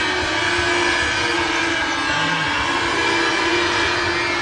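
Steady background din of a basketball arena during play, with a constant low hum running through it.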